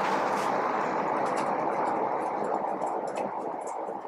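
A steady, even background noise that slowly fades, with a few faint light ticks from a marker writing on a whiteboard.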